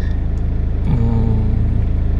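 Mercedes-Benz Vito 115 CDI's common-rail diesel engine idling with a steady, finely pulsing low rumble. A short held tone sounds over it about a second in.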